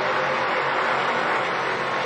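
A pack of NASCAR Truck Series race trucks' V8 engines at racing speed, heard as one steady, dense drone of many engines together.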